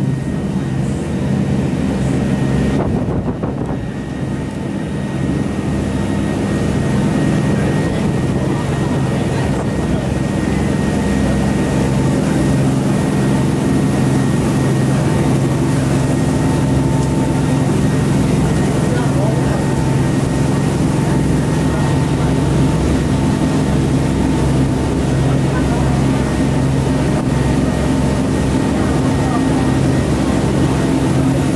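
A passenger shuttle boat's engine running steadily under way, a constant low drone with noise from the moving boat.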